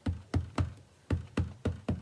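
Ink pad tapped repeatedly onto a rubber background stamp to ink it, about three to four soft taps a second with a short pause near the middle.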